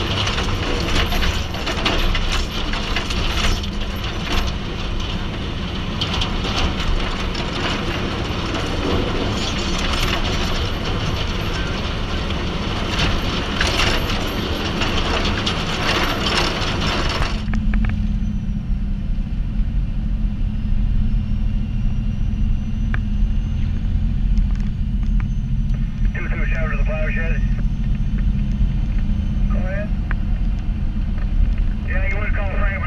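Snow-plow truck pushing through a blizzard, heard from a camera mounted outside the cab: a loud, dense rush of wind and blowing snow hitting the microphone over the truck's running. About seventeen seconds in this cuts to a steady low engine rumble heard from inside the truck's cab.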